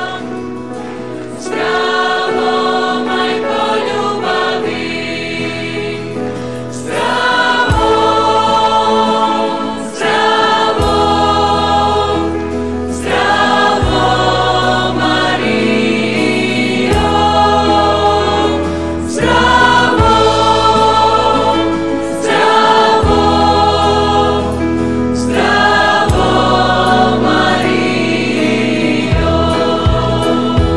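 Religious choral music: a choir singing with instrumental backing. A deep bass comes in about eight seconds in and the music grows fuller.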